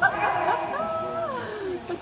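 A dog barking and whining in a run of high calls that slide up and down in pitch.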